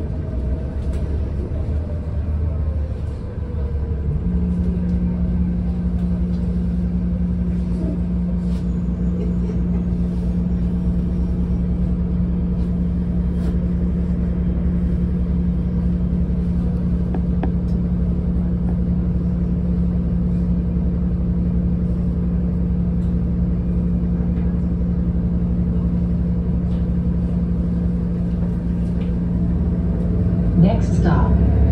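Interior of a moving city bus: engine and road rumble, with a steady low hum that comes in about four seconds in and holds.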